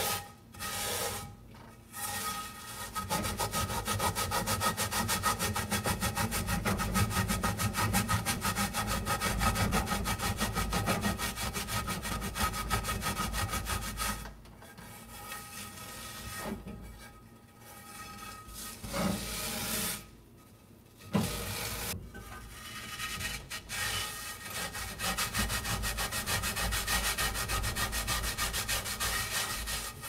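Coarse salt scrubbed around a cast iron skillet with a green scouring pad: fast, continuous scraping strokes. A quieter stretch with short pauses comes about halfway through.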